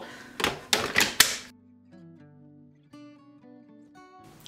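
A few sharp clicks and knocks in the first second and a half as the stick vacuum's removable battery pack and charger are handled, then soft music with quiet held notes that change pitch.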